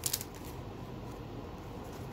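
A brief crinkle of a torn foil trading-card wrapper at the start, then faint rustling as the pack's cards are handled, over a low steady room hum.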